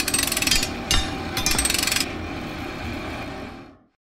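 Two bursts of rapid mechanical rattling over a low rumble, starting abruptly, with a single knock between them; the rumble fades away shortly before the end.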